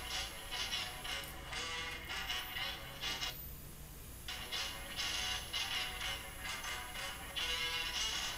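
Intro music of a YouTube video playing through the HP Compaq DC7800p desktop's built-in speaker, with a short break in the music about three and a half seconds in.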